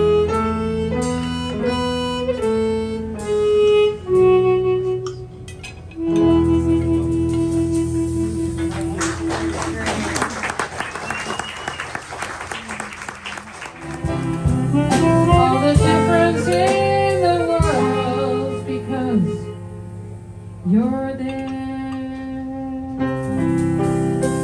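Live jazz from a small band: chromatic harmonica playing held and bending notes over piano chords and a bass line with drums. A noisy stretch of clicks and hiss comes about midway, and the music changes near the end.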